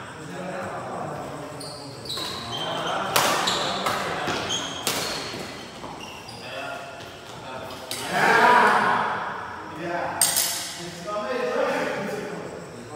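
Badminton rally in an echoing hall: a few sharp racket hits on the shuttlecock, about three seconds in, near five seconds and just after ten, with short shoe squeaks on the court floor between them. Players shout and call out, loudest about eight seconds in and near the end.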